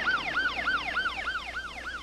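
Ambulance siren on a fast yelp, its pitch swooping up and down about four times a second, growing fainter toward the end as the ambulance pulls away.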